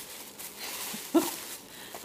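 Faint rustling of a gift bag and its wrapping as an item is lifted out, with a short rising vocal sound from the woman a little after a second in.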